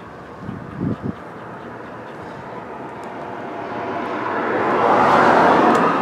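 Traffic on a busy road: a passing vehicle's noise swells over the last few seconds. A couple of low thumps come about a second in.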